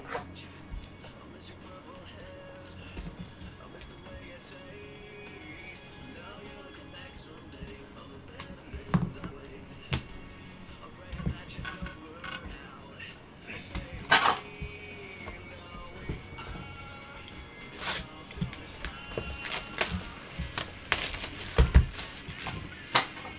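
Scattered clicks and taps of plastic card holders being handled, over faint background music. Near the end comes a dense burst of crinkling as plastic wrap is pulled off a trading-card box.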